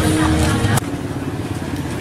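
Market street noise: a motor vehicle engine running with voices in the background. The sound drops abruptly just under a second in.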